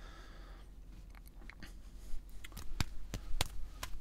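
Quiet room tone with faint, scattered clicks and taps that come more often in the second half.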